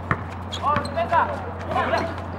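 A basketball dribbled on a concrete court, making sharp bounces, the loudest just after the start, while players shout short calls to each other.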